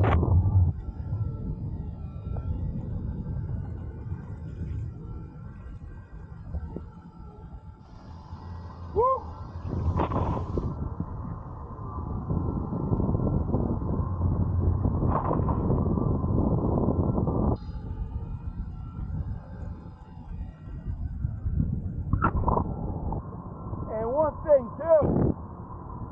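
Wind rushing over the microphone and water noise from an electric hydrofoil board in flight, rising and falling in loudness with a few short sharp gusts, and dropping somewhat about two-thirds of the way through.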